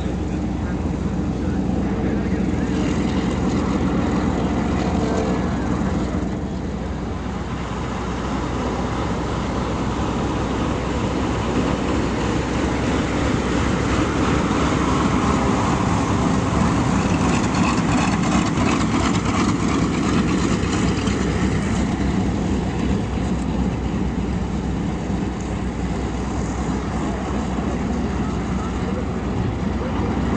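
Twin Allison V-1710 V12 engines of P-38 Lightnings taxiing close by at low power: a steady propeller drone that swells as a plane passes, loudest around the middle.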